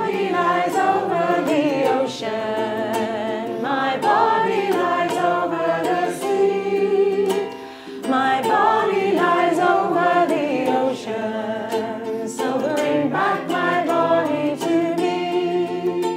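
A small group singing a song together to ukulele accompaniment, in phrases broken by short gaps for breath.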